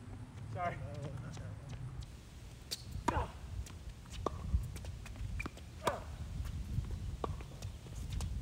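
Tennis balls struck by rackets and bouncing on a hard court during a served point: a series of sharp pops, the loudest about three, four and a half, and six seconds in, over a steady low rumble.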